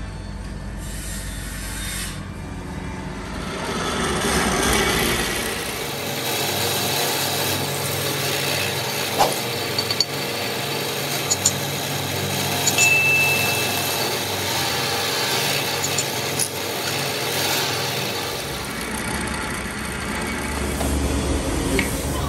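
Drill press motor running steadily while its bit bores into a black pakkawood knife-handle block, with rasping cutting noise, a few sharp clicks and a brief high squeal about halfway through.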